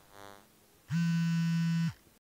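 Electronic outro music: after a brief lull, a low, buzzy synthesizer note is held for about a second and cuts off just before the end.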